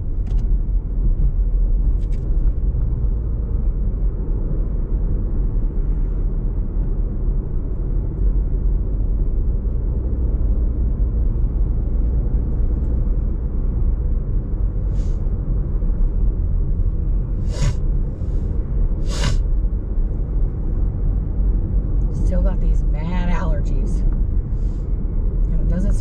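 Steady low road and engine rumble inside a moving car's cabin, with a few short noises about two-thirds of the way through.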